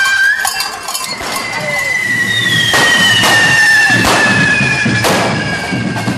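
Whistling fireworks from a correfoc: long steady whistles, joined about two seconds in by a second, higher whistle that slowly falls in pitch. Four sharp cracks sound across the middle.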